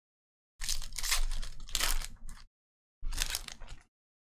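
Foil trading-card pack wrapper being torn open and crinkled, in two bursts: a longer one starting about half a second in and lasting about two seconds, then a shorter one about three seconds in.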